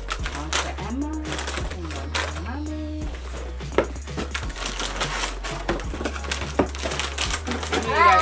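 Crinkly plastic snack bags rustling and crackling as they are handled and pulled one after another from a cardboard box.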